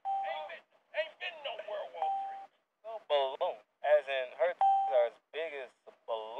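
Voices talking in quick bursts, with three short, flat, steady tones cutting in among them.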